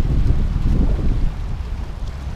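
Wind buffeting the microphone, a loud low rumble that is strongest in the first second and then eases a little, over the wash of small waves on shoreline rocks.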